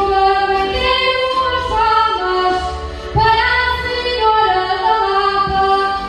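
A woman singing a line of a Portuguese desgarrada (cantares ao desafio, an improvised sung challenge) into a microphone, in held notes that waver slightly. The phrase breaks about three seconds in and the next line begins.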